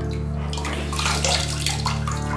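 Water from a washbasin tap running and splashing, starting about half a second in and fading near the end, over a steady background music bed.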